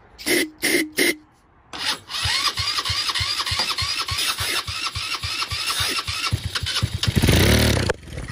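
GY6 150cc single-cylinder four-stroke engine on its electric starter, primed with starter fluid: three short bursts of cranking, then a long crank that settles into a steady rapid beat of firing strokes. It grows louder near the end and then cuts off.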